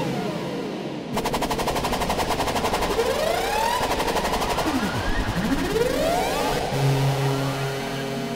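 Experimental electronic noise from a small BC9 synth run through effects pedals. A rapid stuttering buzz carries pitch sweeps that glide up and then down, and near the end it settles into steady low tones.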